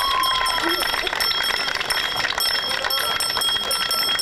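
A small hand bell shaken quickly and continuously, its ringing steady and high-pitched: the traditional 'first bell' rung at the start of the school year.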